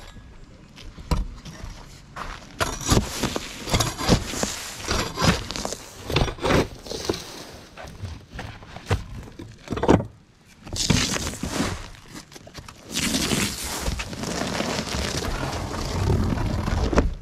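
Gravel-surfaced flat roofing being torn off with a roofing fork: irregular scrapes, knocks and crunching of loose gravel, with footsteps on the gravel. Near the end comes a longer stretch of tearing and dragging as a large sheet of the roofing is pulled up.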